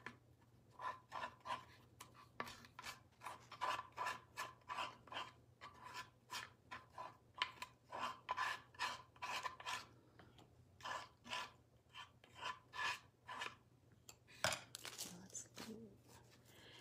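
Faint, repeated rubbing strokes of an applicator spreading gel medium across the wooden birdhouse, about two to three strokes a second, with one louder stroke near the end.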